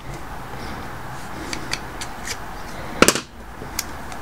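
Small metal clicks of a pin-tumbler lock cylinder being handled and reassembled, with one sharp click about three seconds in, over a steady background hum.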